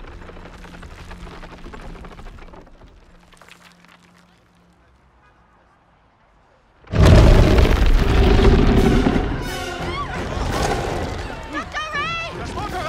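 Film sound effects: after a hushed lull, a sudden very loud, deep boom about seven seconds in as the possessed stone lion statue comes to life, carried on by a loud rumbling din under the film score.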